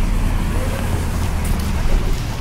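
City street traffic, a steady low rumble, with faint voices of passers-by.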